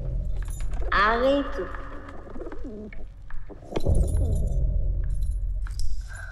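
Film soundtrack with a low, steady drone, a brief rising call about a second in, and scattered faint clicks and rustles.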